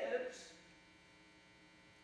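A man's spoken word trails off in the first half second, then a faint, steady electrical mains hum fills the pause.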